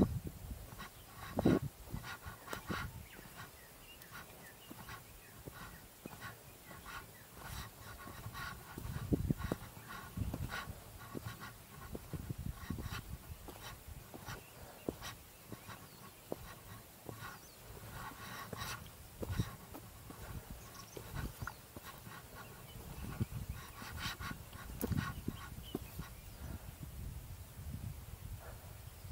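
A hiker breathing hard in repeated panting breaths while walking. Footsteps and small sharp clicks of gear on a dirt trail sound throughout, with occasional low thumps on the body-worn microphone.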